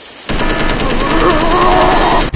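Rapid automatic gunfire, a dense machine-gun rattle that starts about a quarter second in, loud and continuous.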